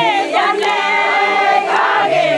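A group of women singing together without instruments, many voices at once with pitches sliding up and down.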